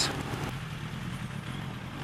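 Suzuki Bandit's inline-four engine running steadily at low revs as the motorcycle rolls slowly through stationary traffic, with a light hiss of wind and road noise.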